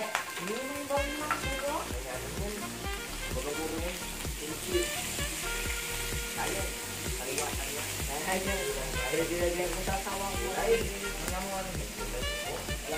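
Slices of pork belly sizzling on a grill pan over a portable gas stove, under background music with a steady beat.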